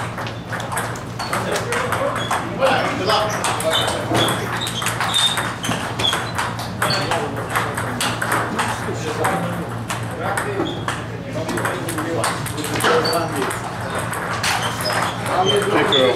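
Table tennis balls clicking off paddles and tables, many quick irregular clicks from several rallies at once, over a steady low hum.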